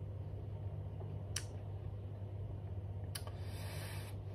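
Steady low hum of a small room, with a single light click about a second and a half in. Near the end another click is followed by a soft breathy hiss, a breath out while tasting a sip of beer.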